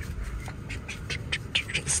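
Quick, irregular short squeaks and clicks as a leather steering wheel is spun hand over hand during a tight turn, over a low engine and road rumble inside the car.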